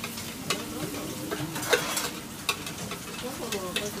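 Ramen kitchen at work: metal ladles and noodle strainers clinking against pots and bowls, about seven sharp clinks with the loudest a little under two seconds in, over a steady hiss from the stove and boiling pots.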